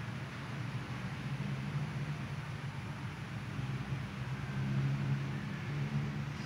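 Steady room ambience of a large church: a low rumble under an even hiss, with no speech or music.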